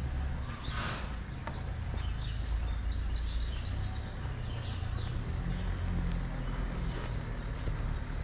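Street ambience while walking, with a steady low rumble on the microphone throughout. Small birds chirp in short, thin, high notes from about three to five seconds in.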